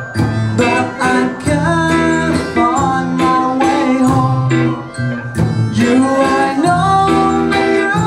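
A live rock band playing, with electric guitar, violin and a regular drum beat under a sung vocal line.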